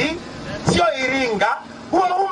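A man speaking into a microphone, his voice amplified, in phrases with short pauses.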